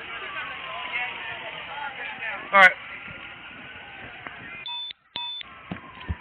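Two short electronic beeps about half a second apart near the end, from a police officer's worn equipment, over the steady noise of a crowd walking.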